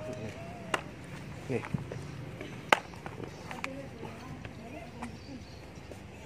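Faint voices in the background with a few sharp clicks, the loudest a little under three seconds in.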